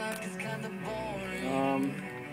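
Music from an FM radio station playing at low volume through the car stereo.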